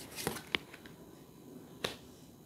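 Light clicks and taps of tarot cards being handled and touched down on the cards spread on a table: a few in the first second, the sharpest about half a second in, and one more near the end.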